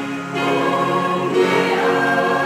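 Mixed choir singing a hymn in sustained chords, accompanied by an electronic keyboard; the chord changes about a second and a half in.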